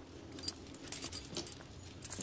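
Light metallic jangling with several sharp clinks, one about half a second in and a cluster around a second in.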